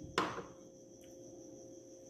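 A glass bowl set down on a tiled countertop: one short knock near the start.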